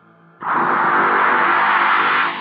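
Horror trailer soundtrack: a faint eerie ambient drone, then about half a second in a sudden loud blast of harsh noise, a jump-scare sting.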